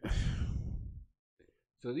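A man's long exhale, a sigh breathed close into the microphone, lasting about a second and fading out, just after a quick intake of breath. Near the end he starts to speak.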